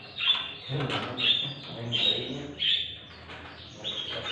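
A roomful of caged songbirds, canaries and finches, calling. There are short high chirps about every half second to a second, with lower notes underneath.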